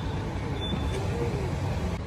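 Steady low background rumble, with faint distant voices about half a second in.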